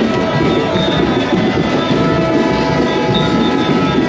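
Several horns held in long steady tones of different pitches, sounding together over the dense din of a large celebrating crowd.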